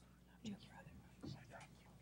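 Faint, indistinct voices exchanging a few words off-microphone, two short snatches over a steady low hum.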